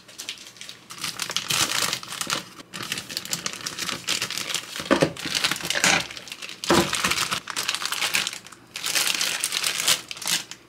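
Plastic zip-lock bags and plastic wrap crinkling and rustling in irregular bursts as bagged food is handled.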